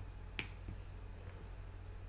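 A single short, sharp click about half a second in, with a couple of much fainter ticks after it, over a faint steady low hum.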